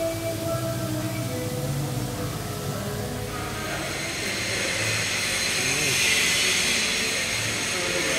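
Workshop background noise: indistinct voices and low hum, with a steady hiss that builds up about halfway through and stays loud.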